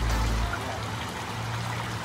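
Steady trickling, running-water noise with a low hum beneath it.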